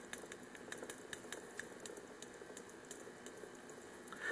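Chalk writing on a blackboard: faint, irregular taps and scratches, several a second.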